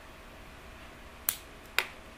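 Two short, sharp clicks about half a second apart, over quiet room tone.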